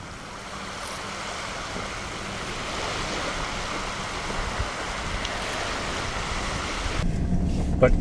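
Wind and small waves washing on a shoreline, a steady hiss. About a second before the end this gives way to the low hum of a vehicle running, heard from inside the cab.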